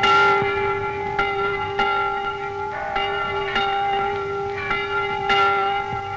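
Bells ringing, struck repeatedly about once a second, each strike's tones ringing on and overlapping the next.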